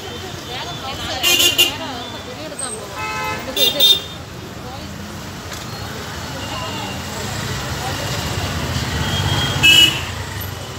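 Busy street ambience: a murmur of people's voices and passing motorbikes, cut by short vehicle horn toots about a second in, twice around three to four seconds in, and again near the end. A low engine rumble grows louder toward the end as a vehicle passes close.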